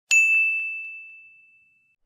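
A single bell-like ding sound effect: one sharp strike with a clear high tone that rings on and fades away over about a second and a half.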